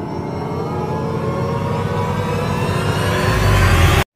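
Intro sound effect: a dense, many-toned swell that grows steadily louder and slightly higher in pitch, then cuts off suddenly.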